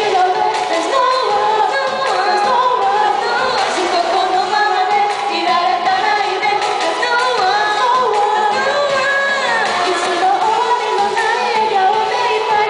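Two young women singing a Japanese pop duet into microphones over a karaoke backing track, amplified through stage PA speakers.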